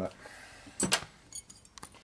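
Metallic clinks as a Harley 4-speed transmission case is handled on a steel workbench: a sharp double clink a little under a second in, then a few lighter ticks.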